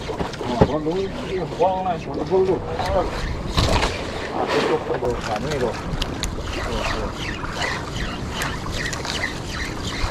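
Steady wind and sea noise on a small open boat, with indistinct voices talking during the first few seconds.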